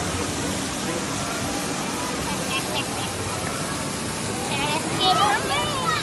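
Steady rush of water from a river-rapids raft ride, with a cascade pouring down from a tipping prop boat onto the churning rapids. Excited, high-pitched voices shout over it, loudest near the end.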